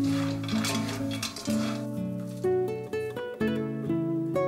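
Background acoustic guitar music, plucked notes changing every half second or so. Under it in the first couple of seconds, a light rustle of crispy fried fish being tossed with wooden spatulas in a wok.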